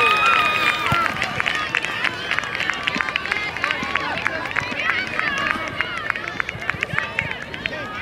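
Live field sound from a youth soccer game: scattered high-pitched voices of players and spectators calling and shouting at a distance, with no clear words, and short clicks and knocks throughout.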